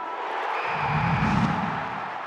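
Musical intro sting for an animated title card: a dense rushing swell over a deep bass rumble, easing off near the end.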